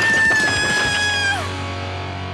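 A cartoon girl spitting out a mouthful of food with a spluttering splatter, then letting out one high held cry that slides down and stops about a second and a half in, over background music.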